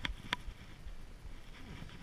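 Handling noise as a striped bass is gripped and lifted close to the microphone: two sharp clicks about a third of a second apart, then low rustling.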